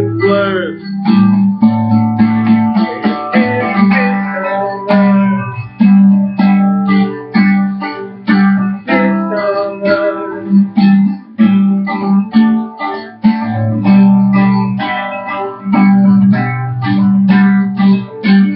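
Instrumental guitar passage of a backing track: picked guitar notes in a steady rhythm over held low bass notes, with no singing.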